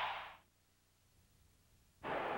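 Near silence: a steady hiss-like noise from the end of a TV station bumper fades out within the first half second, leaving a gap of dead air.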